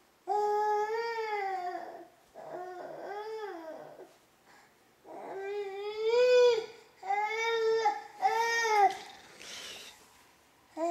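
Baby fussing and crying in about six high-pitched, drawn-out wails, each up to a second and a half long, with short breaks between them.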